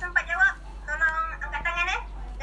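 A child's high-pitched voice in short phrases that rise and fall in pitch.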